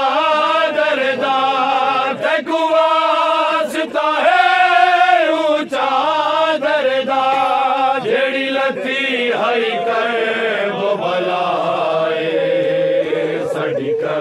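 Men's qari party chanting a noha in unison, long held lines whose pitch rises and falls, broken by short breaths. A few faint sharp knocks sound over the singing.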